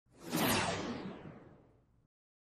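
A single whoosh sound effect: a rush of noise that swells quickly, then fades out over about a second, growing duller as it dies away.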